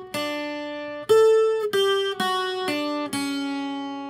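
Acoustic guitar playing a slow single-note lead phrase: about six plucked notes, each left to ring, spaced roughly half a second apart and mostly stepping down in pitch. It is a requinto ornament on the top two strings, played note by note.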